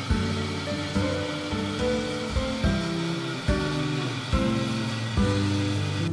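Background music with evenly spaced plucked notes, over a steady hiss of tap water running into a watering can.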